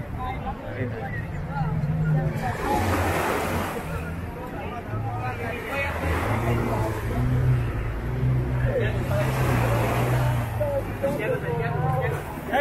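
Beach soundscape: waves washing up on the sand twice, over the chatter of a crowd of beachgoers and the low steady hum of boat engines.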